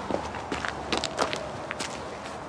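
Footsteps of several people walking on hard ground: a run of irregular, overlapping steps that stops near the end.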